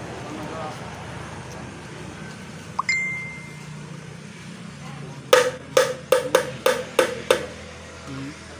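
Knife strikes while butchering a yellowfin tuna: a single metallic clink with a short ring about three seconds in, then seven sharp knocks in quick succession, about three a second, as the blade chops at the fish's head.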